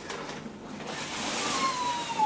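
Vacuum cleaner running: a steady rushing noise that grows louder, with a motor whine that begins to fall in pitch near the end.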